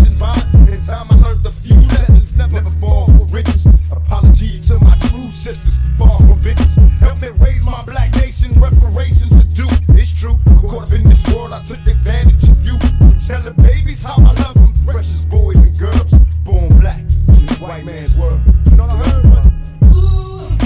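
Hip hop track with a man rapping over a beat with heavily boosted bass.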